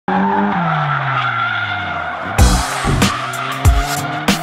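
Drifting cars, engine and tyre squeal, mixed with music; a tone falls in pitch over the first second and a half, and heavy beat hits come in about halfway through.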